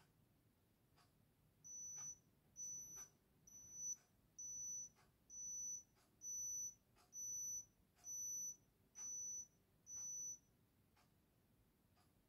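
Digital oral thermometer beeping ten times, short high-pitched beeps a little under a second apart, signalling that the temperature reading is finished. Faint soft ticks about once a second run underneath.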